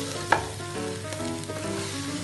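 Wooden spatula stirring and folding moist gari (cassava flakes) in a nonstick pan, with one sharp knock against the pan about a third of a second in.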